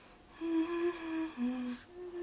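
A person humming a slow tune in a few long held notes, stepping down to a lower note about a second and a half in.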